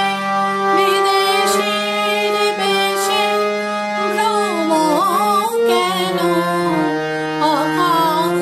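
Harmonium playing a Bengali song melody over sustained low notes, with a woman singing along. Her voice wavers in ornaments about halfway through and again near the end.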